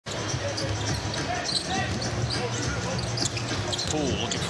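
A basketball being dribbled on a hardwood arena court during live play, over the steady hum of an arena crowd.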